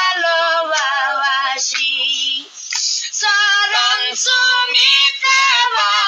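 A high voice singing a Bengali devotional jikir song, gliding between held notes, with a short break about two and a half seconds in.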